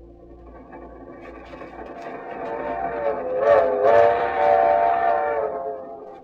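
Steam locomotive whistle as a radio drama sound effect: a chord of several tones that swells up over a few seconds, sags slightly in pitch near the middle, then fades away near the end.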